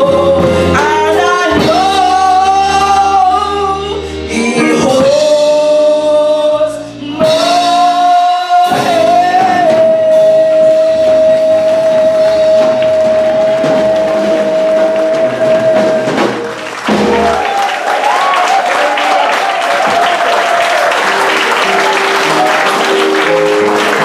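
A solo singer over a backing track closes a gospel song, holding one long high note for about six seconds. The audience then applauds over the closing bars of the music.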